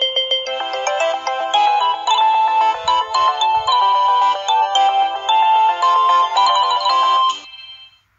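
Online slot machine win jingle: a fast electronic chime melody that plays while the win tallies up and cuts off abruptly about seven seconds in.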